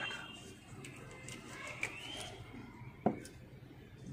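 A bird chirping faintly in the background, with short rising calls, and a single sharp knock about three seconds in.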